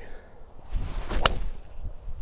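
A three-wood driving a golf ball off the tee: a short swish of the downswing, then one sharp crack of clubface on ball a little over a second in.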